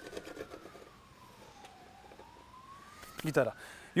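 A faint siren wailing, its pitch sliding slowly down and then back up, with a short spoken word near the end.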